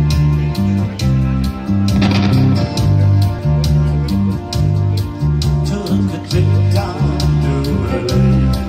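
A small live band playing: an electric guitar over a prominent bass guitar line, with keyboard and a steady beat.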